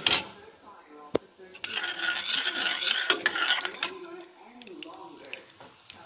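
Metal slotted spoon stirring dal frying in oil in a stainless steel pan, clinking sharply against the pan at the start, about a second in, and around one and a half, three and four seconds in, with a hiss of frying in between.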